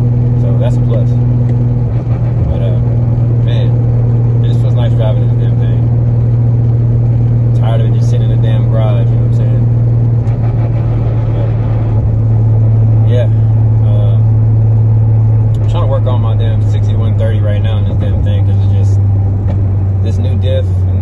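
Car engine droning steadily inside the cabin while cruising, a loud low hum that drops a little in pitch partway through.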